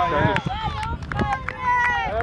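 Several high-pitched voices of young players and touchline spectators shouting and calling at once over a football game, with a few short sharp knocks among them.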